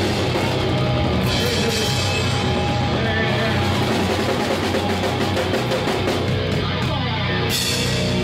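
A heavy metal band playing live, heard from right at the drum kit: fast drums and crashing cymbals up front in a loud, unbroken wall of sound, with guitar behind.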